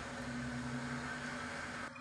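Faint, steady low hum over a light background hiss, with no pouring or handling sounds.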